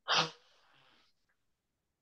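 A single short, sharp, breathy burst from a person, like a sneeze, lasting about a third of a second at the start.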